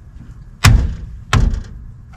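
Two sharp clunks about 0.7 s apart from a DO35 off-road caravan coupling on the tow hitch as its red button is pressed to lock it.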